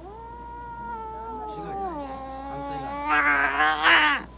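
Ragamuffin cat yowling in protest while held down on its back: one long, low, drawn-out call that drops in pitch about halfway, then swells much louder and harsher in the last second.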